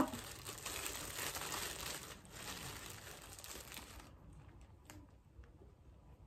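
Clear plastic bag crinkling as it is handled and opened, for about four seconds, then only faint rustles and ticks.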